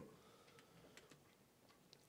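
Near silence: room tone, with a few faint clicks.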